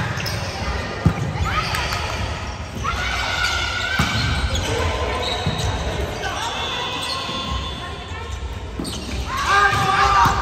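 Indoor volleyball rally: the sharp slap of a hand striking the ball about a second in, and again at about four seconds, with players' shouted calls echoing in a large gymnasium.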